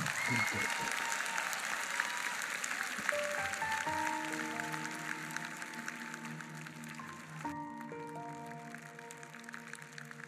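Concert-hall audience applauding, fading out over the first seven seconds or so, as a soft instrumental intro of slow, held notes begins underneath and carries on alone.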